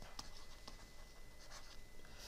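Stylus writing on a drawing tablet: faint, light taps and scratches as a word is handwritten.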